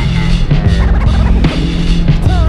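Hip-hop intro beat with turntable scratching: short, quick sliding pitch sweeps over a steady low bass drone.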